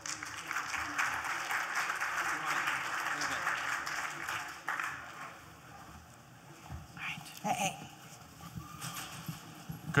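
Audience applauding, the clapping fading out about four or five seconds in, followed by a few faint knocks and rustles.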